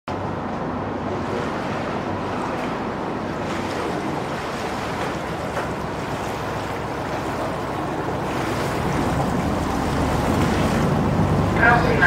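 Water rushing against the hull of a moving Venice vaporetto (water bus), with the low steady hum of its engine beneath, growing louder over the last few seconds. A voice starts just before the end.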